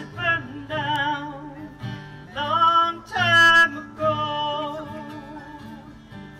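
A woman singing long held notes with a wavering vibrato, accompanied by acoustic guitar and mandolin. The loudest, highest phrase comes about halfway through.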